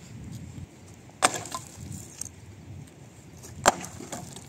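Axe chopping firewood: two sharp strikes into a dry log, about two and a half seconds apart.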